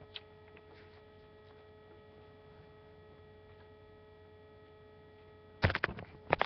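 A faint, steady electrical hum with a few clear tones. Near the end there is a sudden loud bump.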